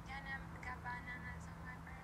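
A faint, high-pitched voice singing short phrases with a held note, played back from a phone voice-memo recording, over a steady low hum.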